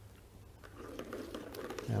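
Plastic draw balls clicking and rolling against each other in a clear bowl as a hand mixes them, faint at first and growing louder from about half a second in.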